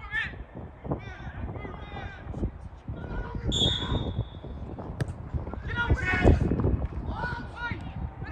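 Shouting voices of footballers and spectators, with a short single referee's whistle blast about three and a half seconds in, signalling that the free kick can be taken. About a second later a sharp thud of the ball being struck, followed by louder shouts as play moves into the penalty area.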